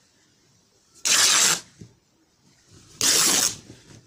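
A length of plain bedsheet fabric ripped by hand from a small scissor snip, twice, each rip a loud tearing sound about half a second long, about two seconds apart.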